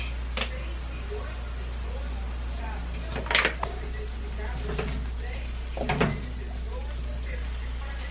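Yakisoba noodles, chicken and vegetables being tossed in a wok with chopsticks and a wooden spoon: a few short scrapes and knocks against the pan over a steady low hum.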